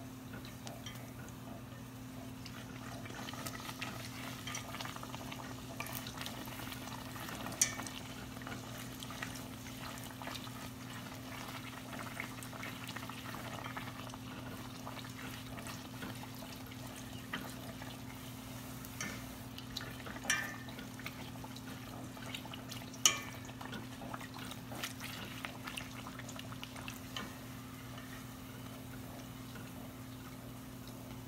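Bánh tiêu dough deep-frying in hot oil, a steady fine sizzle and crackle, stirred and turned with wooden chopsticks. A few sharp clicks stand out, the loudest about 7 s in and two more near the 20 and 23 s marks, over a steady low hum.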